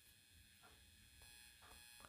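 Near silence: a faint steady hum of room tone.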